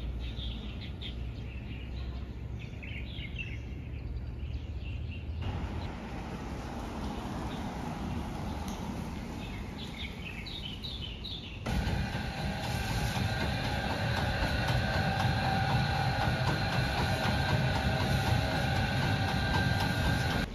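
Quiet outdoor ambience with a low rumble and small bird-like chirps. About twelve seconds in it cuts to a louder, steady machine noise with several held whining tones.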